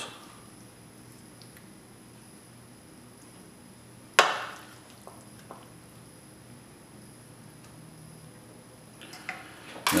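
Mostly quiet room tone while apples are spooned out, broken about four seconds in by one sharp knock of a wooden spoon against the dishes, which rings briefly; a few faint ticks follow.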